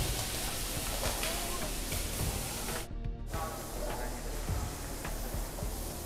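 Food sizzling in a hot steel frying pan on a gas hob, a steady hiss under background music. The sizzle breaks off abruptly about three seconds in, and a quieter kitchen hiss follows.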